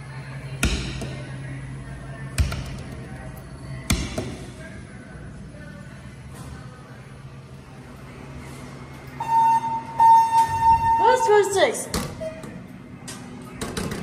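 Three dull knocks in the first four seconds, then about nine seconds in an elevator's steady electronic arrival tone sounds for about a second and a half, followed by a short voice.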